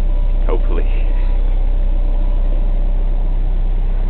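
Steady low drone of engine and road noise inside the cab of a large vehicle travelling at motorway speed. A short voice is heard about half a second in.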